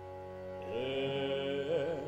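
Opera singing over a steady sustained drone: a voice enters about two-thirds of a second in on a long held note and wavers into an ornament near the end.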